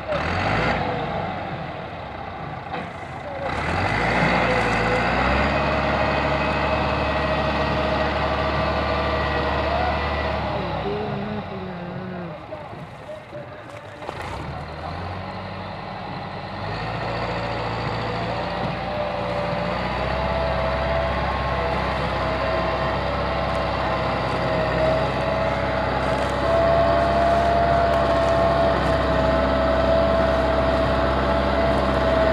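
Massey Ferguson 385 tractor's four-cylinder diesel engine working hard under heavy load as it pulls an overloaded sugarcane trolley. It climbs in revs about four seconds in, eases off for a few seconds in the middle, then builds again and is loudest near the end.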